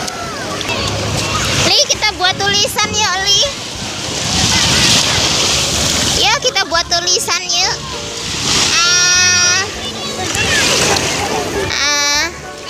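Shallow sea surf washing and splashing at the water's edge, with children's voices calling and shouting among the bathers at intervals.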